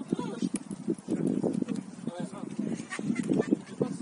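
Voices of footballers calling and shouting across the pitch, unclear and indistinct, with a few short sharp clicks in between.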